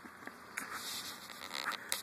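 Faint sounds of a home aquarium's air bubbler and hang-on filter running, with a few small clicks.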